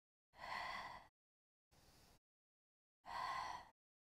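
A woman breathing audibly through a leg-kick exercise. There are two strong breaths about two and a half seconds apart, each followed by a fainter one, with near silence between.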